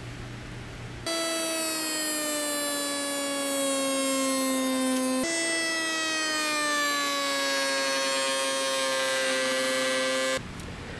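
Triton router on a router table spinning a lock miter bit through a test cut, a steady high whine that starts about a second in. Its pitch sags slowly as the bit takes the cut, jumps back up about five seconds in, and sags again.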